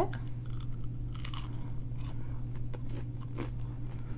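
A person biting into and chewing a crispy McDonald's spicy chicken nugget, heard close up as many small, irregular crunches.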